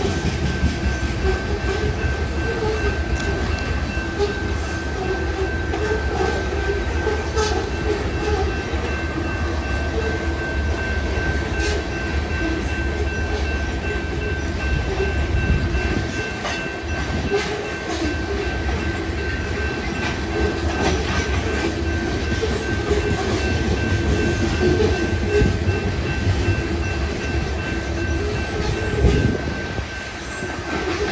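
Freight train of tank cars rolling past at a steady speed: continuous rumble of wheels on rail, with scattered clicks as the wheels cross rail joints and a thin steady high-pitched whine.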